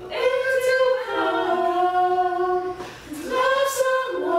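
Gospel vocal group singing a cappella in harmony: long held notes, with a short break about three seconds in.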